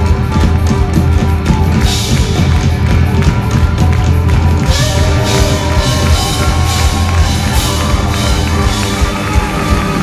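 A live band plays an instrumental passage with drums, electric guitar and clarinet carrying a held, gliding melody line.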